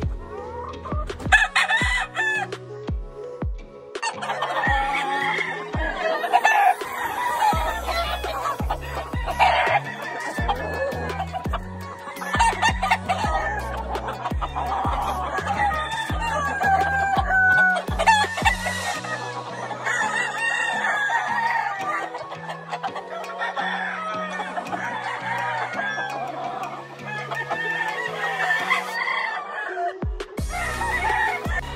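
Gamefowl roosters crowing and clucking, with many calls overlapping from about four seconds in, over background music with a stepping bass line.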